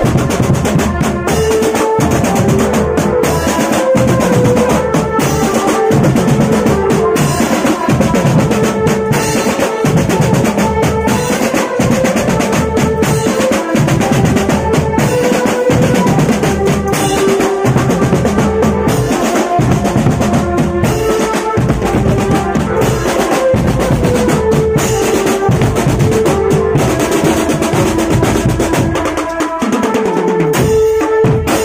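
Marching drum band playing: bass drums and snare drums beating a fast, steady rhythm with rolls, and a pitched melody carried over the drumming.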